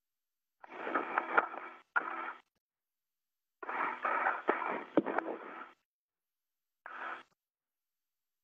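Four short bursts of static-laden transmission on the spacewalk radio loop, each cutting in and out abruptly with dead silence between. The longest, in the middle, lasts about two seconds.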